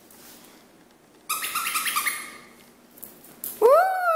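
A squeaky dog toy squeaked a few times in quick succession, a high, steady-pitched squeak lasting about a second, followed near the end by a person's loud cheer.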